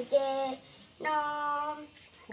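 A young girl singing two held notes at a steady pitch, a short one at the start and a longer one of about a second in the second half.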